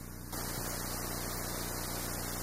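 Steady hiss with a low mains hum, no distinct handling sounds; the hiss steps up slightly about a third of a second in. This is recording noise from a microphone with sound issues.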